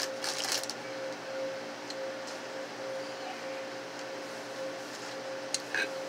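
Steady machine hum with one constant mid-pitched tone, from refrigerated glass-door drink coolers, with a few faint clicks and rattles in the first second.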